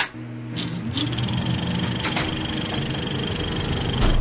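Sound effects at the start of an animated advertisement: a sharp click, then a motor-like hum that rises in pitch over the first second and settles into a steady drone, with a thin high whine running through it.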